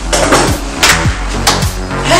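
Background music with a steady beat: a deep kick drum that drops in pitch on each hit, a little under twice a second, with sharp snare-like hits between.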